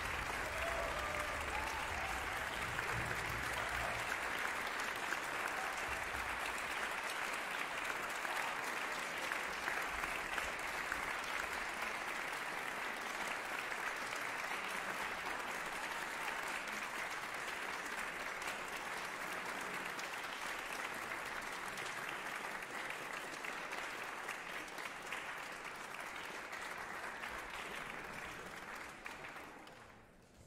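Audience applauding steadily for the wind ensemble, dying away near the end.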